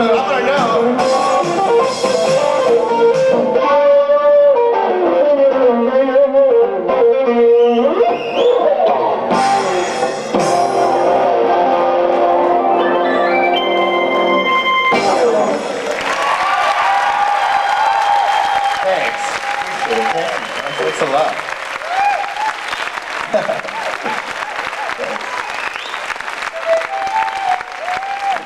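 Live instrumental music on a Chapman Stick, tapped bass and melody lines with keyboard, ending abruptly about halfway through. Audience applause follows, with a few stray stick notes sounding over it.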